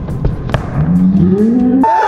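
A cow's moo sound effect: one long low call rising in pitch, cut off abruptly near the end. Before it come a couple of sharp knocks.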